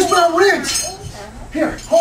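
Voices calling out on a stage, with light clinking between them.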